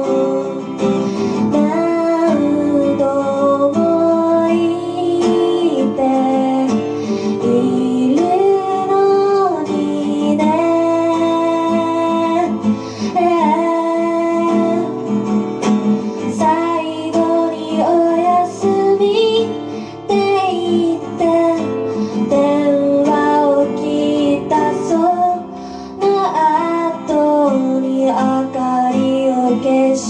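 A song: a woman singing a melody with held, gliding notes over guitar accompaniment.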